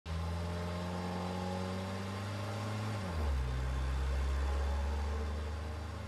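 Car engine running steadily, heard inside the car; its low hum drops in pitch about halfway through and then holds steady.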